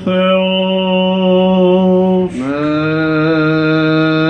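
Greek Orthodox Byzantine chant sung by male chanters in long held notes, the liturgical response after the priest's petition. About two seconds in the singing breaks briefly, then resumes on a slightly lower note that is held to the end.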